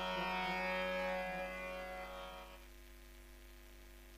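Tanpura drone of a Hindustani classical vocal recital ringing on after the voice has stopped, fading out over about two and a half seconds to a faint hum as the performance closes.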